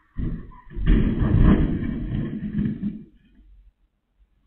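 A car crashing into a backyard fence: a sudden thud, then a louder impact about a second in and roughly two seconds of crunching and scraping that dies away. It is heard through a security camera's muffled microphone.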